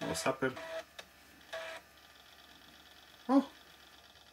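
A laptop floppy drive working briefly while setup reads from the disk: a short mechanical buzz about one and a half seconds in, between short spoken exclamations.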